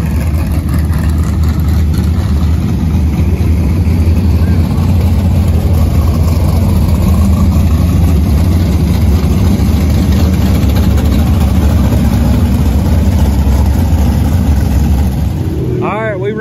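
A field of dirt-track race cars, modifieds and stock cars, running laps together on a dirt oval: a loud, steady wall of engine noise that rises just as it begins and holds until near the end.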